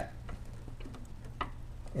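Faint clicking of a headlamp's toothed adjuster wheel being turned with a Phillips screwdriver, a few light ticks with the clearest about a second and a half in.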